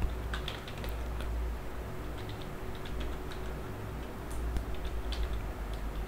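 Computer keyboard being typed on, irregular runs of key clicks over a low steady hum.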